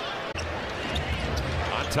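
Live game sound from a basketball arena: a low crowd rumble with a basketball bouncing on the hardwood court. The sound changes abruptly about a third of a second in, at an edit.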